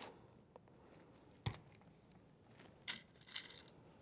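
Quiet small handling sounds of tabletop craft work, glue bottle and googly eye in hand: one sharp click about one and a half seconds in, then two softer taps near the end.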